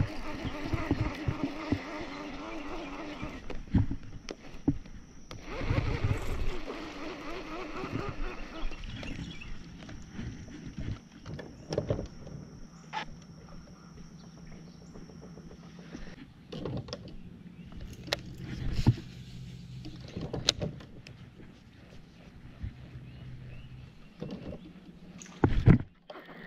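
A small bass being reeled in, handled and released over the side of a bass boat: irregular splashes, reel noise and knocks on the boat. A thin high whine runs through the first half, and a steady low hum runs through the second half.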